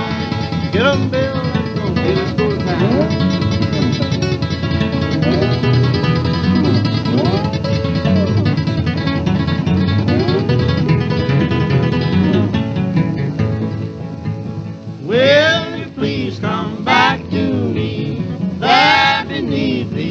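Old-time country record: a guitar break with sliding, gliding notes, then a voice comes back in with the song about three-quarters of the way through.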